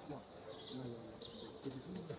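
Indistinct background voices with insects buzzing, and a few short high chirps.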